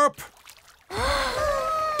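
A cartoon character's voice letting out one drawn-out, dismayed "ohh", starting about a second in, its pitch rising and then falling.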